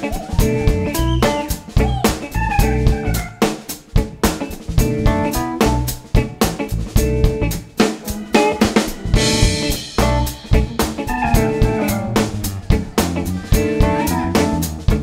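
Live funk band playing an instrumental groove: a drum kit drives a busy beat under bass, electric guitar and keyboards, with a cymbal crash about nine seconds in.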